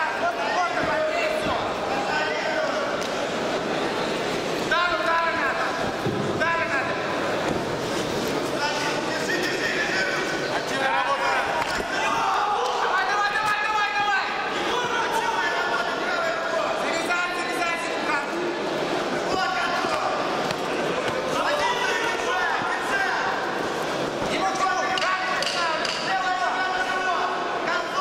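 Several voices shouting and calling out, often over one another, in a sports hall, with a few dull thuds mixed in.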